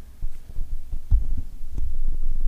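Low thumps and rumble from the lectern's gooseneck microphone being handled, irregular and strongest about a second in and again near the end.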